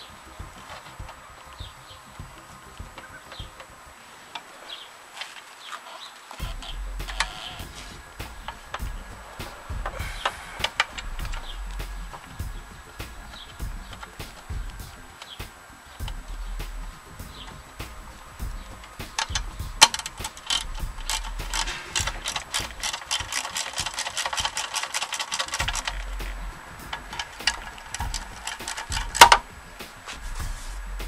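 Hand socket ratchet clicking in fast runs, with the longest and loudest run about two-thirds through, as it drives in the bolts that hold the fuel tank on a Briggs & Stratton lawn mower engine. Scattered clicks and knocks of the tool against the metal, with a sharp snap near the end.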